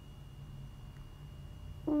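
Quiet room tone with a faint low hum; right at the end a young girl starts an exclamation of 'whoa'.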